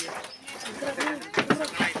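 People talking, with a few brief sharp knocks or rustles in the second half.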